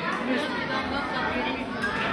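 Crowd chatter: many guests talking at once in a large, crowded hall, with no single voice standing out.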